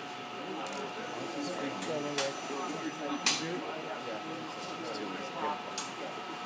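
Automated library storage crane running, its motors giving a steady whine of several tones as its shuttle draws a metal book bin out of the rack onto the platform. Two sharp knocks about two and three seconds in, the second the louder.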